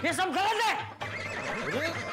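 A loud, high-pitched, quavering call lasting about a second, followed by softer sliding tones.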